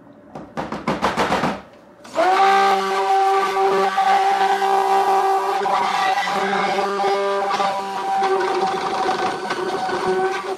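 Hand-held immersion (stick) blender mixing soap batter in a plastic jug: a short burst about half a second in, then, after a brief pause, a steady motor hum for about eight seconds that stops just after the end.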